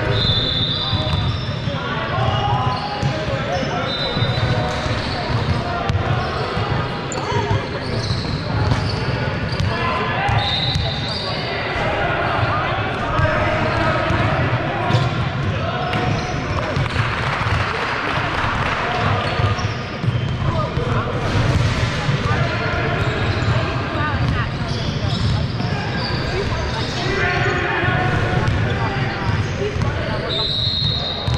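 Basketballs bouncing on a hardwood court in a large echoing gym, under steady indistinct chatter, with a few short high squeaks.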